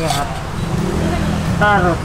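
City street traffic: a steady low engine-and-tyre rumble, with a vehicle passing close by that swells through the middle and fades near the end, under short bits of talk.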